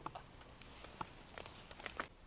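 A few faint, sharp clicks and light rustling as a bullet-riddled microwave oven is handled and its door pulled open.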